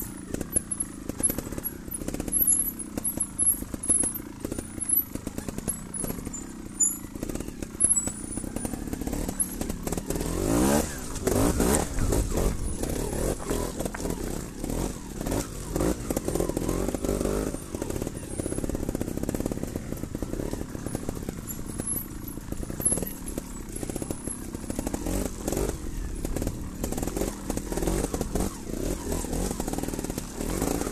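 Trials motorcycle engine running under load, revving up and dropping back repeatedly as it is ridden over dirt and rocks, with a sharp rev rise about ten seconds in. Heard close up from the rider's position, with scattered knocks and clatter from the bike over the terrain.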